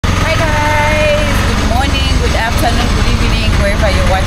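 Auto-rickshaw (tuk-tuk) engine running as it drives, heard from inside the passenger cabin as a steady low drone, under a woman talking.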